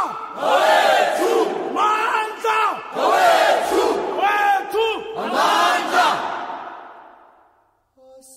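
A group of voices chanting in rhythm, with repeated rising-and-falling shouted calls about once a second, fading out over the last two seconds.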